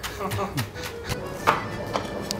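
Background music over knife strokes knocking on a cutting board as leek is chopped. The sharpest knock comes about one and a half seconds in.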